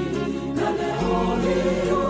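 Gospel choir singing with instrumental backing: a bass line changing note about once a second under a steady beat.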